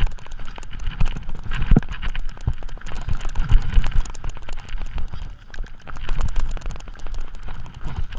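Mountain bike clattering at speed down a rocky, root-strewn forest trail: a dense, irregular run of rattles and knocks from the bike, with heavy dull thumps as the wheels hit rocks and roots.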